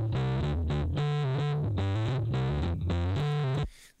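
A bass line played back through Logic Pro X's Phat FX plugin, heavily saturated by its bit-crush, soft-saturation and tube distortion stages. Its highs are cut off sharply by the plugin's bandpass. It stops abruptly just before the end.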